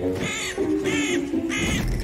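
Crows cawing in a steady run of harsh calls, about two or three a second, over soft background music.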